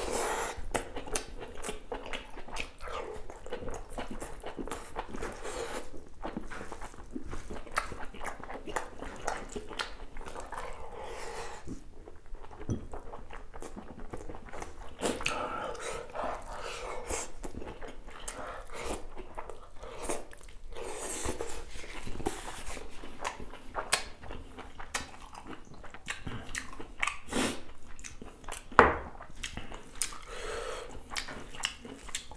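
Close-miked chewing of rice, boiled beef and mustard leaf eaten by hand: wet mouth sounds and many short clicks, with some crunch. One sharper, louder sound comes near the end.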